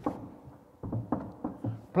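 Several light knocks and clicks of small hard objects being handled and set down: tools and plastic wall plugs picked up from a metal tool table.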